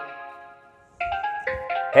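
Short intro theme jingle of bell-like, ringing melodic notes. The notes fade out about a second in, then a new run of quick notes starts.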